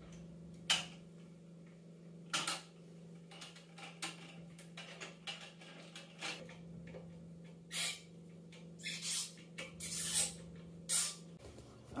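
Scattered plastic clicks and knocks as a bidet attachment is fitted under a toilet seat, over a steady low hum that stops near the end.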